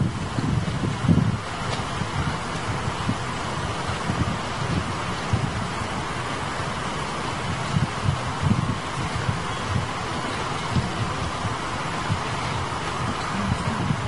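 Wind buffeting a camcorder microphone: a low, uneven rumble over a steady hiss.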